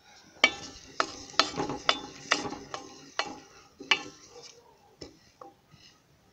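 Wooden spoon stirring cracked barley grain in water in a pot, knocking and scraping against the pot about twice a second for the first four seconds, then a few fainter strokes.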